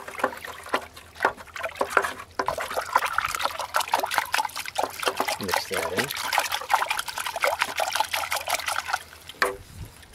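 Rainwater sloshing and splashing in a plastic bucket as a wooden stick stirs it round, mixing in the sea salt just added. The stirring stops about a second before the end.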